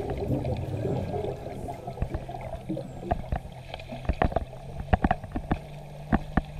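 Underwater sound picked up by a camera beside a sardine bait ball: a low rumble and steady low hum with scattered sharp clicks and knocks, thickest in the second half.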